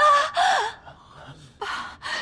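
A woman gasping in shock: a breathy, half-voiced cry lasting under a second, then a pause and a short sharp breath near the end.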